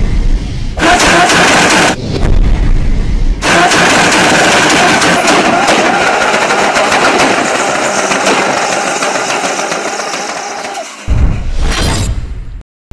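Car engine sound effects: two short revs, each about a second long, then a long steady engine run that slowly fades away as the car drives off. A new, deep hit starts about a second before the end.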